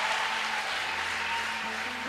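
A congregation clapping, a steady applause, with soft held music chords underneath.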